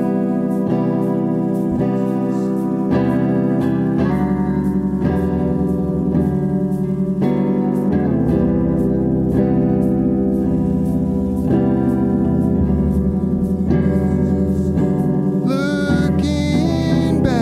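Live rock band playing the instrumental opening of a slow song: two electric guitars, bass guitar and a drum kit keeping a steady beat, without vocals.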